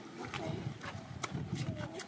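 A person chewing noisily and smacking their lips while eating by hand, with a few irregular clicks.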